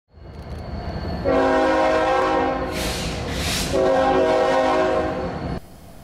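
Locomotive air horn sounding two long blasts over the low rumble of a train, with a short hiss between the blasts; the sound cuts off suddenly near the end.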